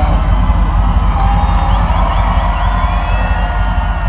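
Large concert crowd cheering and screaming, many voices at once, over a continuous low bass from the PA sound system.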